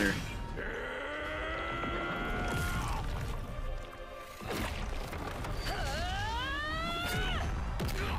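Anime battle-scene soundtrack: background music with long held, voice-like tones over a low rumble. One held tone runs in the first few seconds, and another slides up in pitch and falls away late on.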